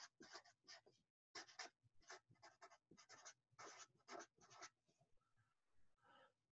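Felt-tip marker writing on paper: a run of short, faint strokes that stops near the end.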